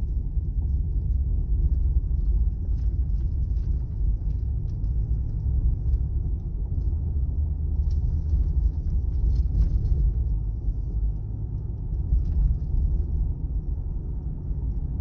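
Steady low rumble inside the cabin of a 2011 Ford Crown Victoria Police Interceptor driving slowly: its 4.6-litre V8 engine and road noise from the patched concrete.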